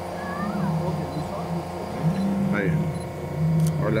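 A steady engine hum, with people's voices murmuring in the background and a few faint higher calls.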